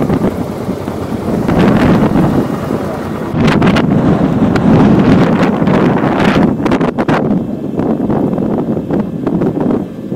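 Strong wind buffeting the microphone, a rough gusting rumble that swells and eases, with a few brief knocks.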